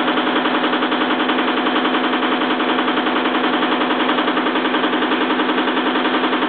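Electric test motor and alternators of a bench energy-transfer rig running steadily under the transfer switch. It is a steady machine hum with a rapid, even pulsing.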